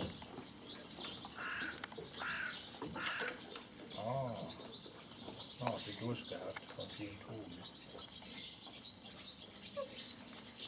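Birds chirping in the background, short high calls scattered throughout, with faint low voices now and then.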